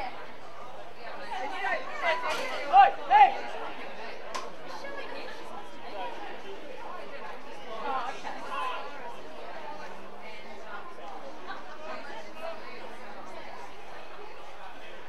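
Distant, unintelligible voices calling and chattering across an outdoor football ground, with two short loud shouts about three seconds in.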